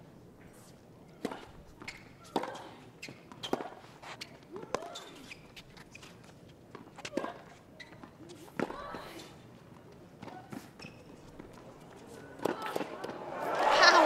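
Tennis rally: racket strikes on the ball about once a second, several with a player's grunt on the shot. Near the end the crowd breaks into cheering and applause.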